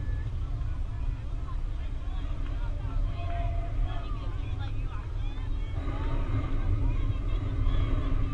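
Scattered, indistinct voices of players and onlookers calling and chatting, over a steady low rumble.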